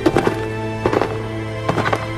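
Horse hooves clip-clopping in short clusters about once a second, over steady background music.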